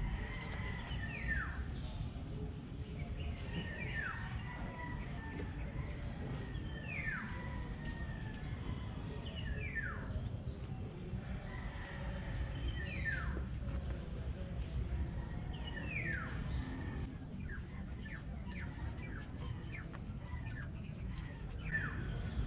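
A bird calling over and over, a single downward-sliding whistle six times, about every three seconds, over a steady low background rumble.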